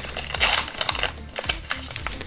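Foil Pokémon card booster pack wrapper crinkling in the fingers as it is opened, in several short irregular rustles, loudest about half a second in.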